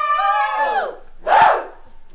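Voices holding one long sung note of a traditional welcome chant, which glides down and ends about a second in, followed by a single short shout.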